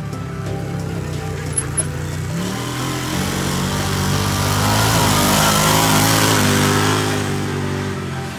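Arctic Cat Wildcat side-by-side driving across a dirt field, growing louder as it comes close around the middle and fading as it pulls away near the end, with background music over it.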